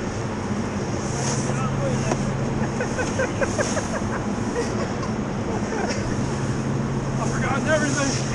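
Snowboards sliding and scraping over packed artificial snow, with a steady hiss that swells and fades, over a steady low hum and faint voices.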